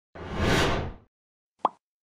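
Animated logo sound effects: a whoosh of about a second that fades downward, then a single short pop about one and a half seconds in.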